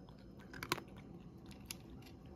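A cat chewing and crunching dry kibble from its bowl. There are a few sharp crunches, the loudest about a third of the way in and another near the end.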